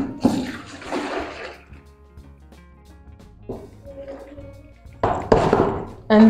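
Foamy liquid soap mixture poured from one plastic basin into another, splashing for the first couple of seconds, then a second splashing pour about five seconds in.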